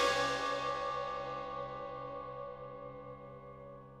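Wind band percussion: a chord of struck metal percussion rings with many steady tones over a low sustained note and slowly fades away.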